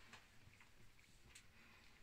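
Near silence: room tone with a couple of faint ticks, one just after the start and one a little past halfway.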